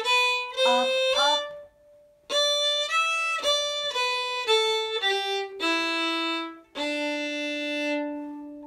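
Solo fiddle played slowly, note by note with separate bow strokes, working through a phrase of an old-time tune in G. A brief pause comes about two seconds in, and the phrase ends on a long held low note.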